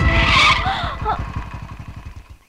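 Motorcycle skidding to a stop on a sandy road: a short burst of tyre hiss on sand in the first half second, then the engine running low and fading away.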